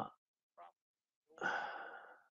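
A man sighs: a breathy exhale of about a second, starting past the middle and fading away.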